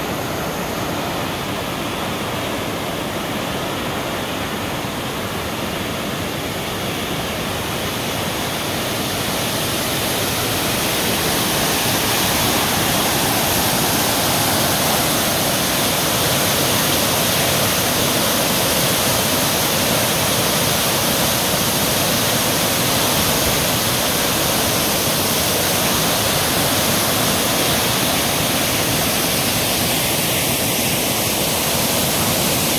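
A dam outlet discharging a high-pressure jet of water into a spray plume: a steady rushing of water that grows louder about ten seconds in.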